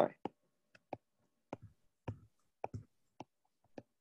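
Stylus tapping on a drawing tablet as short pen strokes are drawn: about a dozen short, sharp clicks at an uneven pace, roughly two a second.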